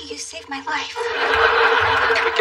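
A woman choking on a nut, making strained, wheezing gasps and coughs while being given the Heimlich maneuver. About a second in, a dense, sustained crowd noise rises.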